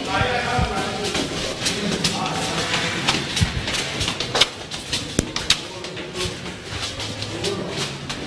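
Crowd chatter: several voices talking at once, with scattered sharp clicks throughout.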